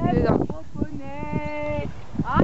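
Horse cantering on grass, its hooves giving dull, irregular thuds. A voice slides in pitch at the start, then holds one steady call for about a second near the middle.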